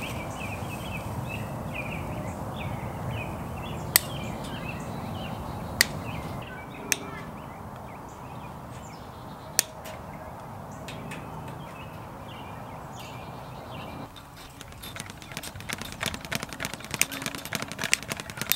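Hand wire cutters snipping a galvanized wire mesh garden fence: four sharp single snips spaced a few seconds apart, with birds chirping. Near the end, a quick run of small metallic clicks and rattles as the mesh is worked.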